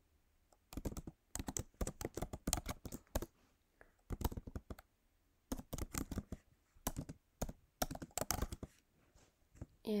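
Computer keyboard typing: quick runs of keystrokes with short pauses between them, stopping about a second and a half before the end.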